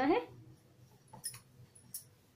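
A few faint light clicks about a second in and a small knock near the end, from a wooden rolling pin being handled on a wooden rolling board.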